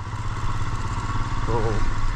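Motorcycle engine running steadily at low speed in slow traffic, a continuous low rumble heard from on the bike.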